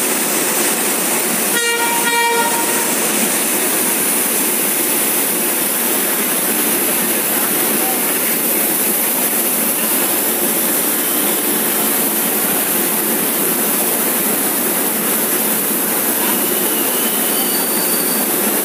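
Passenger train coaches rolling past a station platform as an electric-hauled express departs, a steady rolling clatter of wheels on rail. About two seconds in, a train horn gives two short toots.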